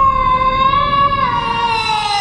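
A woman's long, held scream as she trips and falls onto the sand, one steady high note that slides slightly lower in the second half.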